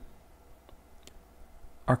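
Two faint, sharp clicks in a quiet pause over a low steady hum, then a man's voice starts near the end.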